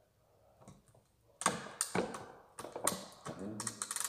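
Sharp clicks and taps of an air rifle being loaded, a pellet set into the breech by hand, starting about a second and a half in.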